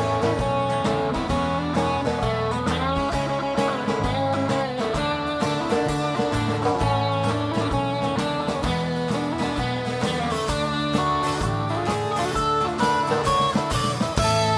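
A live band playing an instrumental break with guitar to the fore: some bending lead notes over a steady beat of drums and bass, with no singing.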